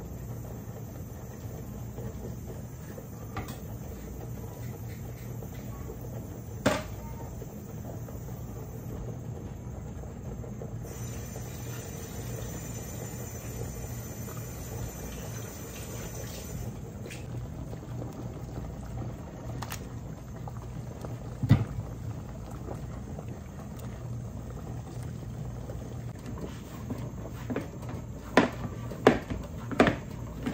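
Kitchen tap running in a thin stream into a steel sink, over a pot boiling on the stove, with a low steady hum. A few sharp knocks stand out, one about seven seconds in, one past the two-thirds mark, and several close together near the end.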